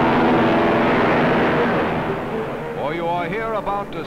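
Loud steady drone of a four-engine C-54 transport's radial piston engines at takeoff, fading away over the first two seconds. A man's narration starts near the end.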